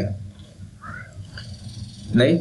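A pause in a man's speech: low background noise picked up by his microphone, with one brief faint murmur about a second in.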